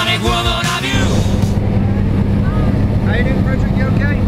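Music cuts off about a second in, giving way to the steady drone of the jump plane's engine heard inside the cabin during the climb.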